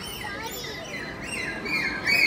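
A dolphin vocalizing on a trainer's hand cue: a string of high whistles and squeaks that rise and fall in pitch.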